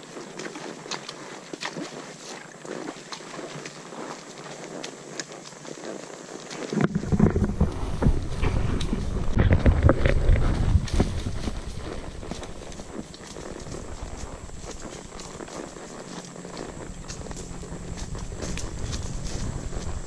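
A saddle mule walking, its hooves knocking in a steady walking rhythm on leaf-littered woodland ground. About seven seconds in, a louder low rushing noise comes in for several seconds, then eases off.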